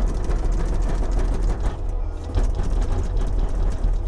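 Kubota SVL75 compact track loader's diesel engine running under hydraulic load while the bucket is shaken hard and fast back and forth, with a rapid rattling clatter from the bucket and loader arms.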